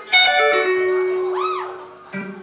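Electric guitar picking a few single notes, the last one held and slowly fading. Over it, about one and a half seconds in, a short tone rises and falls in pitch.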